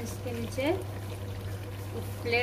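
Potato-and-keema curry simmering in an aluminium pot, a soft liquid bubbling over a steady low hum. A voice is heard briefly near the start.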